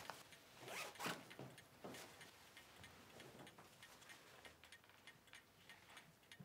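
A dress zipper being pulled, heard faintly: short rasping strokes, the loudest about a second in and at two seconds, with fainter ones after.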